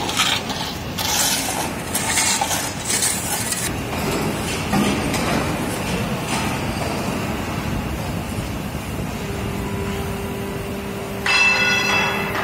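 Stiff broom sweeping a gritty concrete floor in quick scraping strokes for the first few seconds, over steady factory machinery noise. A steady hum comes in later, and a sharp metallic clang rings out near the end.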